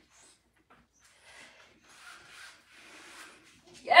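A person doing inchworm walkouts on an exercise mat: three faint, short, hissy rushes, each about half a second long.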